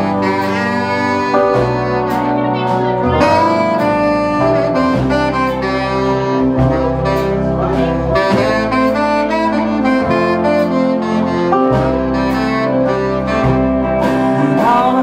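Live band playing an instrumental break, a saxophone carrying the lead line over fiddle, electric guitar, upright bass and drums.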